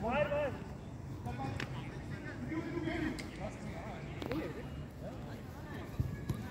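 Footballers' shouts and calls across the pitch, loudest in one shout right at the start, with scattered shorter calls after it and a couple of sharp knocks in between.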